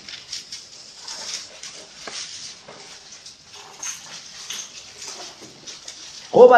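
Faint, scattered paper rustling with a few small clicks: Bible pages being turned as the congregation looks up a chapter.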